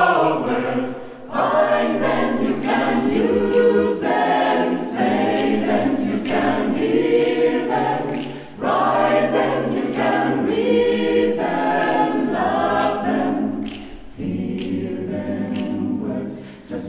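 Mixed chamber choir singing a cappella in close harmony, men's and women's voices together, in phrases with short breaks about a second in, after about eight seconds and near the end.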